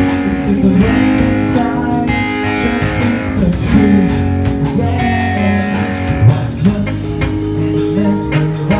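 A live rock band playing, with electric guitar carrying held chords over bass guitar and drums.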